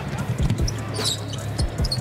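A basketball dribbled on a hardwood court: about four sharp bounces in two quick pairs, with brief high sneaker squeaks near the middle.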